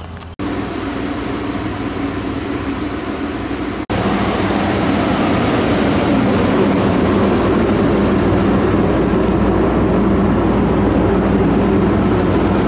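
A loud, steady engine-like drone with a low hum in it. It breaks off briefly near the start and again about four seconds in, and is louder after the second break.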